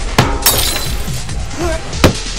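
Music with a sudden shattering crash, like breaking glass, about half a second in, right after a sharp hit.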